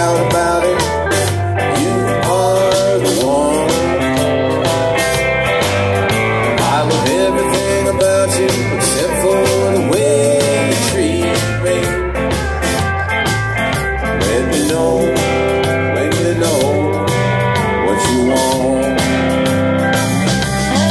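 Live band playing an instrumental passage between verses: electric guitars, drum kit and keyboard, with a lead line of bending notes over a steady beat and a low bass line.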